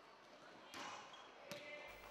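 Faint sound of a basketball bouncing on a court floor, two thuds about three-quarters of a second apart, with indistinct voices in the hall.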